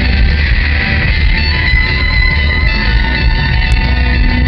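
A live rock band playing an instrumental passage, electric guitar and keyboard over bass and drums, loud and continuous, heard from the audience.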